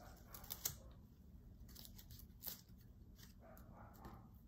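Faint rustling of mesh netting being handled, with a few light clicks about half a second and two and a half seconds in and a soft rustle near the end.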